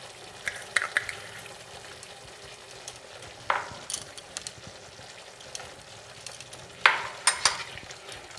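Yogurt-and-spice masala paste sizzling steadily in a nonstick pan as it is fried down. A wooden spatula stirs it, scraping and tapping the pan a few times, most loudly near the end.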